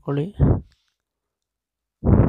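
A voice speaking briefly, with a faint click or two as it trails off, then dead silence for over a second.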